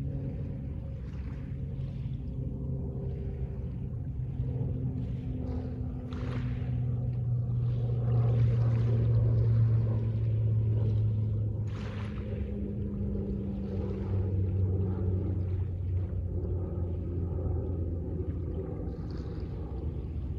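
Slow ambient drone music: low sustained synth-pad notes held for several seconds each, shifting to a new pitch now and then. Over it a soft intermittent wash of small waves, swelling briefly about six and twelve seconds in.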